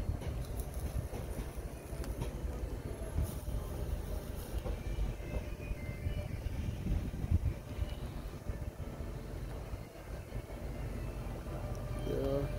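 A low, uneven rumble with no clear events.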